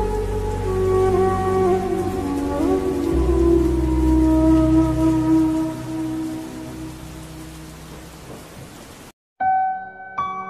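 Slowed, reverb-heavy lo-fi music: a slow melody with gliding notes over a deep bass, laid over a rain sound bed, fading out in its last few seconds. About nine seconds in it cuts to a moment of silence, then the piano notes of the next track begin.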